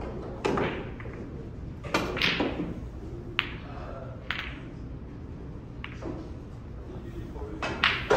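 Snooker balls clicking: a cue strikes the cue ball, then a run of sharp, separate clacks follows as balls hit one another over the next few seconds, some ringing briefly in a large room.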